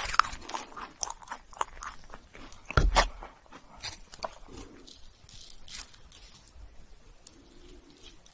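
Sticky crackling and clicking of a toasted marshmallow and soft chocolate cookie sandwich being pulled apart by hand, with one louder dull thump about three seconds in. The crackling thins out and turns quieter in the second half.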